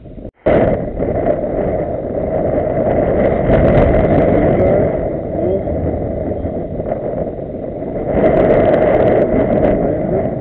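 Loud, steady rumbling noise of wind buffeting an open camera microphone, starting abruptly about half a second in.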